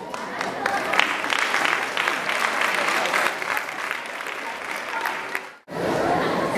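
Audience applauding, a dense patter of many hands clapping, which cuts off suddenly near the end.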